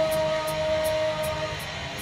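Electric guitar holding one sustained note through the amp. The note dips slightly in pitch, holds steady and cuts off about one and a half seconds in, over faint high ticking at about three ticks a second.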